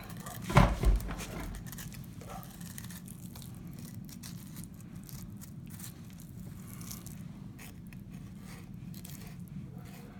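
Fillet knife slicing along a northern pike's rib bones, with faint scraping and small ticks as the blade slides over the ribs. Two sharp thumps sound just under a second in.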